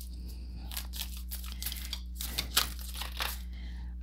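A deck of tarot cards being shuffled by hand: a run of quick, irregular papery flicks and slaps of card stock, over a steady low hum.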